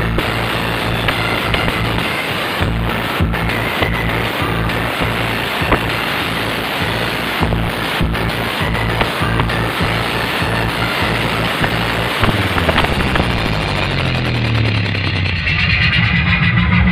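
Music played very loud through a massive truck-mounted speaker-wall sound system, dominated by a pulsing bass beat. Near the end a bass sweep falls in pitch.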